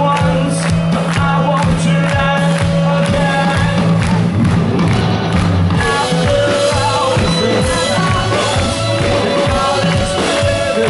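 Live rock band playing loud through a festival PA, with a male lead vocal over drums, bass and electric guitar, heard from within the crowd.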